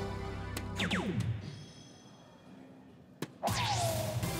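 Electronic music and sound effects from a soft-tip dartboard machine: falling whooshing tones about a second in, a quieter stretch with a short tap, then a loud electronic effect with a falling tone near the end as the leg is checked out.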